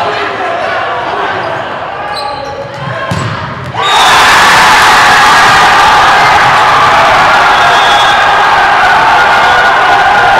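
Gymnasium crowd noise during a volleyball rally, with a thud or two of the ball being hit. About four seconds in, the crowd breaks into a loud cheer that holds steady: the match-winning point has fallen.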